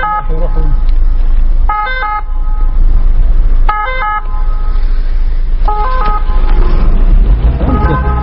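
A short electronic tone made of a few quick stepped pitches, repeating about every two seconds over a steady low rumble.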